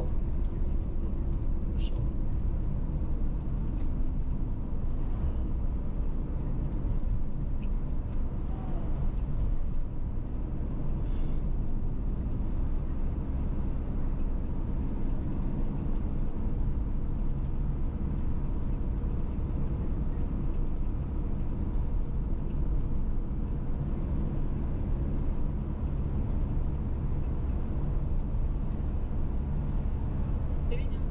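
Steady low rumble of a car's engine and tyres on asphalt, heard from inside the cabin while cruising at an even speed.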